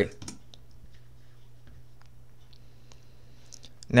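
A few faint, scattered clicks from a computer keyboard and mouse, over a steady low hum.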